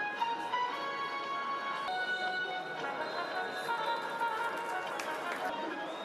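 Music with long held notes that shift to new pitches every second or so, over a steady background noise.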